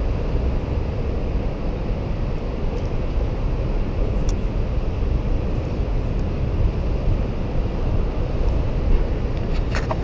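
Steady low rumble of city street traffic picked up by a small action-camera microphone. A few faint sharp clicks sound over it, one about four seconds in and several just before the end.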